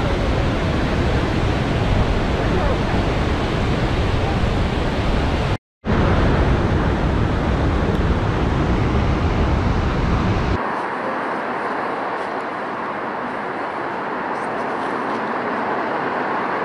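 The Lower Falls of the Yellowstone River, a steady heavy rush of falling water with a strong low rumble, heard close to the brink of the falls. The sound breaks off for a moment a little before six seconds in. About ten and a half seconds in it goes on quieter and thinner, with less rumble.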